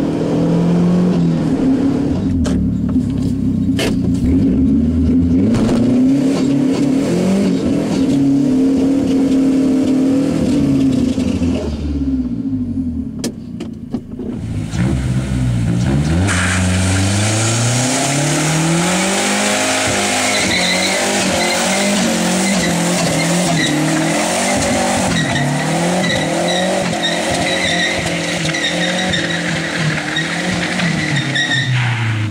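Mazdaspeed3's turbocharged 2.3-litre four-cylinder engine with its downpipe dumped, heard from inside the cabin, revving up and falling back as it accelerates through the gears. About sixteen seconds in, after a cut, a car does a burnout: tyres squealing steadily over a high-revving engine.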